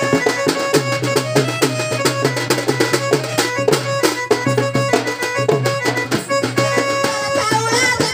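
Loud Odia folk instrumental music: fast, dense drumming under a melody of long held notes, with no singing.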